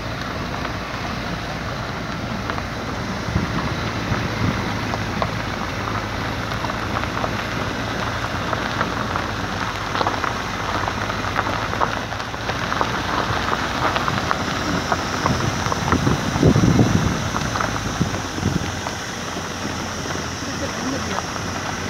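A vehicle driving on a dirt road: a dense crackle from the tyres on gravel over a low, steady engine drone. It grows louder about three-quarters of the way through.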